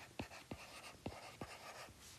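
Faint sound of a stylus handwriting on a tablet screen. A few sharp ticks as the pen tip touches down, with short scratchy strokes between them.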